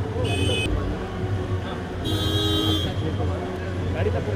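Two short vehicle-horn toots, the second longer, one just after the start and one about two seconds in, over crowd chatter and a steady low hum.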